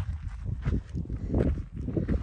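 A hiker's footsteps crunching on sandy gravel beside railroad tracks, a steady walking pace of about two to three steps a second.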